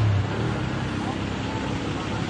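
Steady road noise of a moving vehicle: engine and tyres under a broad rushing hiss, with a low engine hum fading out just at the start and faint voices in the background.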